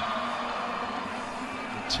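Indoor arena crowd noise during a volleyball rally: an even wash of spectator noise with a faint steady low drone in it. A short sharp sound comes near the end.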